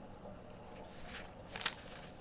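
Faint rustle of paper book pages being handled, two short brushes about a second in and a little after one and a half seconds.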